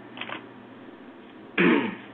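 A brief, loud sound from a person's voice near the end, falling in pitch, over quiet room tone.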